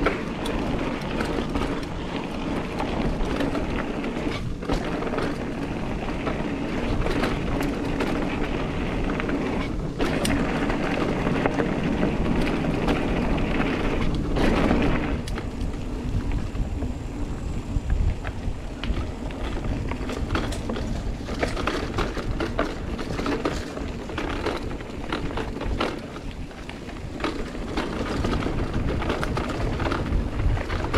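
Mountain bike ridden over dirt singletrack: tyre noise and wind buffeting the camera microphone, with frequent rattles and knocks from the bike over roots and bumps.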